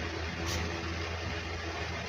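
A steady low hum with an even hiss behind it, like a motor or fan running, with one small click about half a second in.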